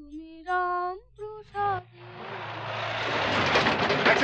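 A man's voice singing a sustained devotional line in Bengali for the first couple of seconds, then a rising swell of noise that builds steadily to its loudest point at the end, a film sound effect leading into a scene change.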